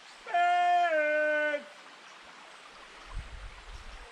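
A single long howl-like voice call, held for about a second and a half and stepping slightly down in pitch partway through, over the faint trickle of a stream. A low rumble follows near the end.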